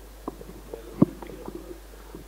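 Handheld microphone handling noise over quiet hall tone: a few soft clicks and one sharper thump about a second in.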